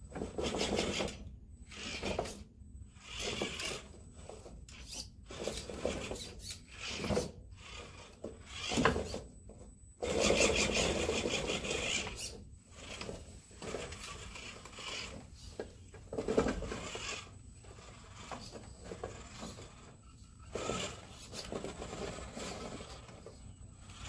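RC rock crawler's small electric motor and geared drivetrain whirring in short stop-start throttle bursts as it crawls over logs, the longest burst about ten seconds in, with tyres rubbing and knocking on the wood.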